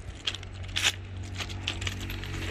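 Footsteps crunching on railway ballast stones while walking beside the track, with irregular clinks and scrunches of the loose rock and the loudest step just under a second in.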